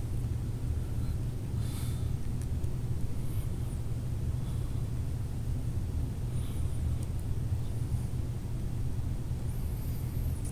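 Steady low background rumble, with only faint, scattered sounds above it.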